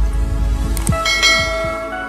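Logo intro sound effect: a deep rumbling hit with quick swooshes, then a bell-like chime about a second in that rings on and fades.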